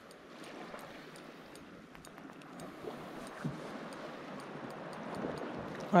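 Gentle seawater lapping against a stone harbour wall, with a faint, regular light ticking over it and a soft knock about three and a half seconds in.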